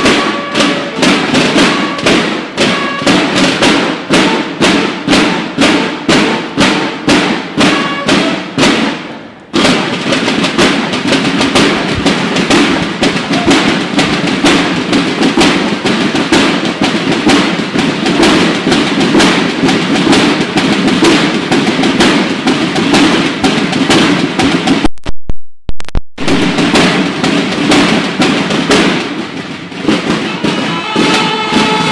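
A banda de guerra's snare drums playing a marching cadence: a steady beat of separate strokes at first, then denser continuous drumming from about a third of the way in. The drumming cuts off suddenly for about a second near three-quarters through, then resumes.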